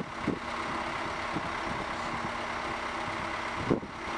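Heavy diesel engine of a crawler crane running steadily at low revs with an even hum while it holds up a large steel pipe section.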